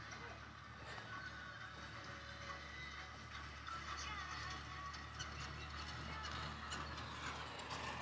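Faint squeaks and taps of a marker writing on a whiteboard, over a low steady hum.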